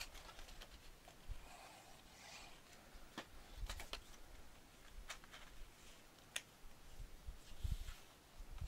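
Kraft cardstock being handled and pressed flat by hand: faint paper rustling with a few light clicks and taps, and soft thumps of hands on the paper near the end.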